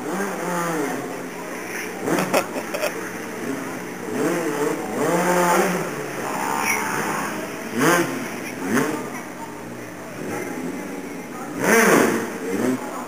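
Motorcycle engine revving up and down again and again as the stunt rider manoeuvres, each rev rising and falling in pitch, the loudest near the end.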